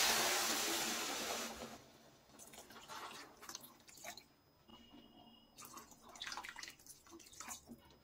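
Water poured from a steel vessel into a steel kadai of roasted rava and vegetables, the cooking water for upma. The pouring is a steady splash that fades out after about a second and a half, followed by a few faint drips.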